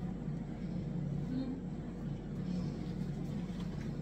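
Steady low background rumble and hum, with a few faint light clicks near the end.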